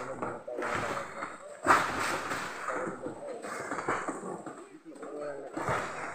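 People talking, not the narrator's Hindi, with one sharp knock a little under two seconds in.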